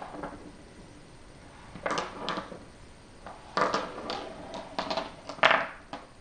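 Go stones clicking and clattering against each other and the wooden board as several are picked up off the board and dropped onto a pile, in a few uneven bursts with the loudest clatter near the end.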